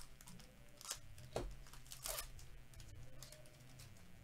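A Topps Series One baseball card pack's wrapper being torn open and crinkled by gloved hands: a few short rips and crinkles, the longest and loudest about two seconds in.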